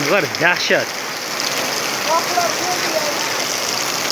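Heavy rain falling steadily onto flooded, puddled ground: an even, unbroken hiss of rain.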